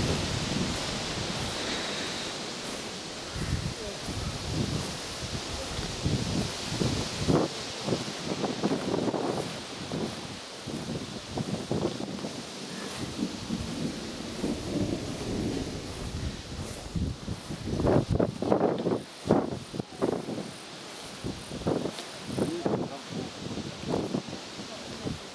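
Wind buffeting the microphone in uneven low rumbles, over a steady hiss of wind through grass. Indistinct voices come in about two-thirds of the way through.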